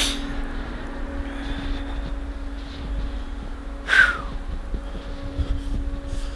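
Wind rumbling on the microphone, with a steady low hum underneath. Two short sharp noises stand out, one at the very start and a louder one about four seconds in.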